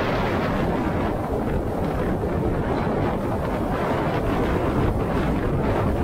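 Steady rushing of wind and road noise from a car driving at speed, with wind blowing over the microphone.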